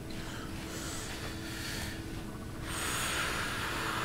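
Two people breathing deeply in a counted breathing drill: a quiet, drawn-out breath at first, then a louder, airy rush of breath starting about two and a half seconds in.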